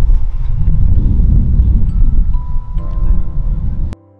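Loud, gusty low rumble of wind on the microphone, with soft music fading in under it about three seconds in. Both cut off abruptly just before the end.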